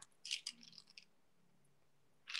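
Faint, brief rustling and crinkling of a plastic product sachet being lifted and handled, in the first second, then near silence.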